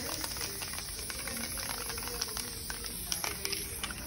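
Aerosol spray paint can hissing steadily as black paint is sprayed onto paper, with faint background voices.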